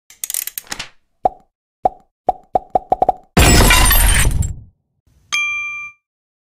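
Logo-intro sound effects: a short swish, then a run of about eight pops that come faster and faster, a loud whooshing burst with a deep low end, and a single bell-like ding that rings briefly near the end.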